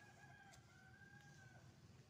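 Faint rooster crowing: one long, held call that ends near the end.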